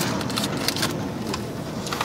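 Paper sandwich wrapper being handled, giving scattered soft crackles over a steady car-cabin hiss.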